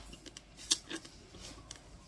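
Raw black rice grains cracking between the teeth as they are chewed: a few sharp, crisp clicks, the loudest a little under a second in.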